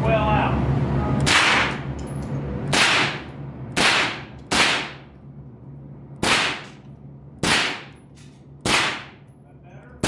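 Seven sharp gunshots, spaced irregularly about one to one and a half seconds apart, each with a short ringing tail.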